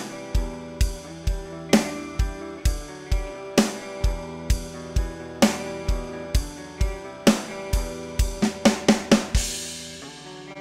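Playback of a programmed MT Power DrumKit 2 virtual drum groove, a steady kick-and-snare beat, under two layered recorded guitar tracks holding chords. Near the end the drums break into a quick run of hits, the chosen fill, finishing on a cymbal wash.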